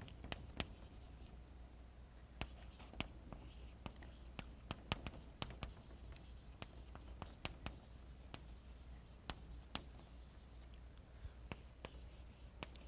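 Chalk writing on a blackboard: a string of faint, irregular taps and short scratchy strokes as letters are written out.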